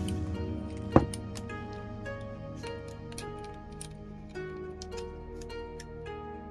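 Gentle background music of plucked, harp-like notes, with one sharp knock about a second in from handling the camera and ball head.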